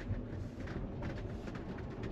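Low, steady road and tyre noise inside the cabin of a moving Tesla Model Y, an electric car with no engine sound.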